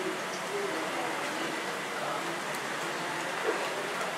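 Steady background hiss of an airport terminal, with faint indistinct voices murmuring in the distance.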